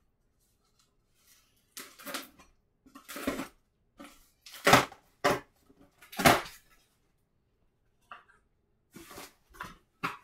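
A knife blade slitting the packing tape on a cardboard box, then the taped flaps being torn and pulled back: a series of short scraping and ripping sounds, the loudest two in the middle. A few lighter cardboard rustles follow near the end as the flaps are folded open.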